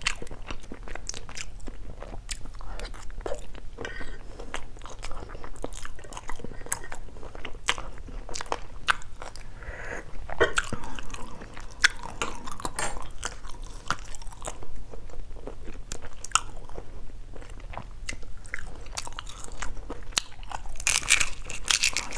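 Close-miked chewing of balut (boiled fertilized duck egg) and fresh herbs, with many small, irregular crunches, clicks and wet mouth sounds.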